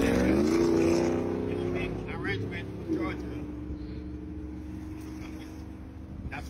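A passing vehicle's engine, rising in pitch as it speeds up, loudest in the first two seconds and then fading. A steady engine drone continues after about three seconds in.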